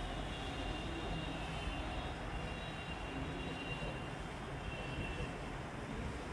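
Steady background noise with a low rumble and a few faint high steady tones; no distinct event stands out.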